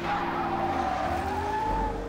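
A car's tyres screeching in a film soundtrack: one long squeal at a held pitch that starts suddenly and dies away near the end, over the song's background music.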